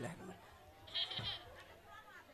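A short, faint, high-pitched voice about a second in, during a lull in the stage talk.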